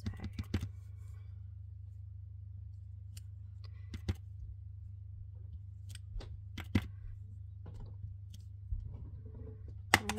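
A clear acrylic stamp block with a clear snowflake stamp tapping on an ink pad and pressed onto cardstock: scattered light clicks and taps, loudest near the start and right at the end, over a steady low hum.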